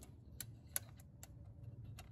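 A handful of faint, sharp clicks scattered irregularly over a low steady background hum, like small metal tool or parts contact.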